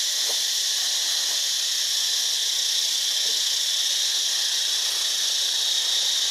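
A steady, high-pitched drone from a chorus of forest insects runs unbroken throughout.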